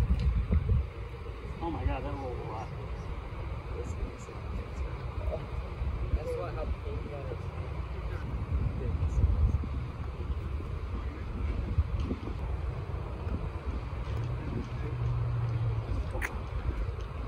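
Steady low wind rumble on the microphone, with faint voices in the background and a few light clicks of a putter striking golf balls. A brief low hum comes in near the end.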